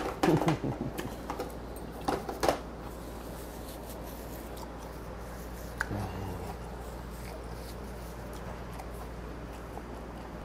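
A man's short laughs and a couple of coughs in the first few seconds, as if something went down the wrong way, then only a steady low hum of the room.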